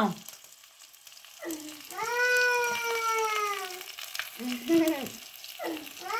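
A cat meowing: one long, slightly falling meow starting about a second and a half in, then a shorter meow near the end, over a faint crackle.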